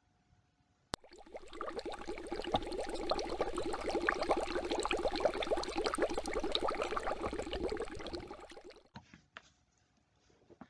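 Bubbling, fizzing liquid sound effect, made of many tiny pops, that starts after a single click about a second in, swells up and fades away near the end.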